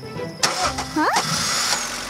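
Cartoon sound effect of a snowmobile engine starting up, kicking in suddenly about half a second in and running on, over children's background music.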